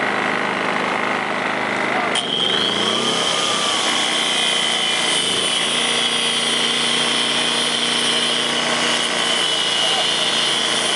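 Handheld power tool running steadily as it cuts through a rubber hose, with a high whine that jumps higher just after two seconds in.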